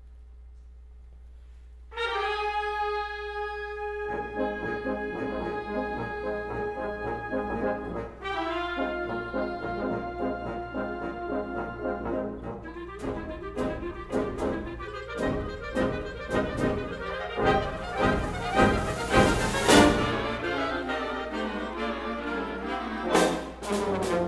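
Concert wind band, with the brass in front, starting up after about two seconds of quiet: a loud held chord, then rhythmic ensemble playing. Percussion hits build up through the second half to a loud crash near the end.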